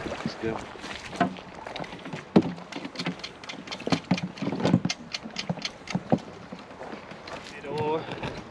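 Indistinct voices with scattered sharp knocks and clatter, from gear being handled around canoes beached on a shingle shore.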